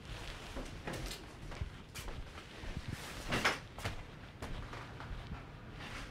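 Scattered soft knocks and rustles of people moving about a house, with one louder rustle about three and a half seconds in.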